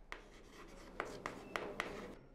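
Chalk writing on a blackboard: a faint run of short scratching strokes and light taps as a word is chalked up.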